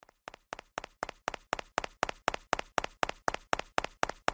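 Logo animation sound effect: a quick run of evenly spaced taps, about four a second, growing louder.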